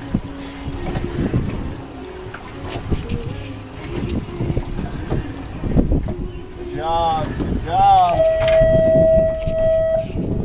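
Wind buffeting the microphone over the low noise of a boat offshore. Near the end come two short wavering pitched calls, then a steady held tone of about two seconds.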